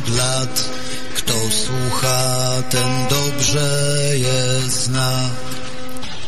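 A recorded song: a low male voice sings long held notes with short slides between them over an accompaniment.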